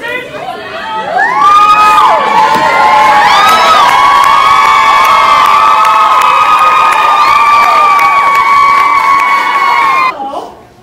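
Crowd cheering with many overlapping high-pitched shrieks and long held calls, swelling about a second in and staying loud before cutting off suddenly at the end.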